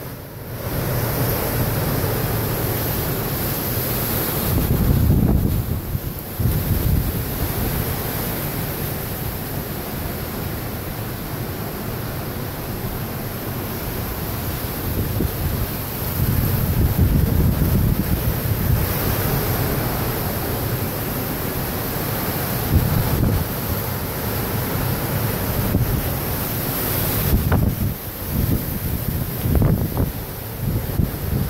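Hurricane-force wind gusting through palm trees with heavy rain, the gusts buffeting the microphone in surges. The strongest surges come about five seconds in and again around sixteen to eighteen seconds.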